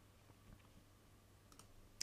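Near silence: faint room tone with a couple of soft computer mouse clicks, one about half a second in and one near the end, as a display setting is changed in software.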